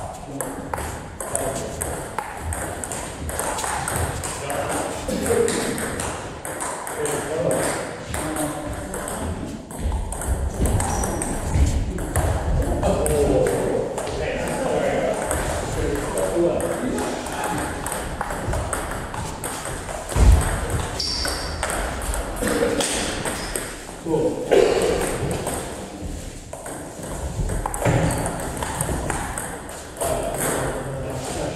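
Table tennis balls clicking off bats and tables again and again during rallies, with people talking in the background.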